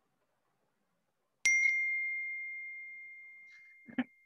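A single electronic message-notification chime, a Telegram alert: one clear bell-like ding about a second and a half in that rings out and fades slowly over about two and a half seconds. A brief thump comes at the very end.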